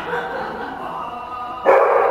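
Akita dog barking once, loud and short, near the end.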